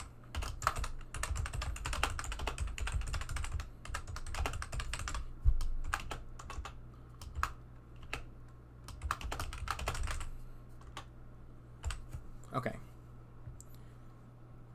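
Typing on a computer keyboard: a quick run of keystrokes for the first few seconds, then slower, scattered key presses, with one louder knock about five and a half seconds in. A low steady hum sits underneath.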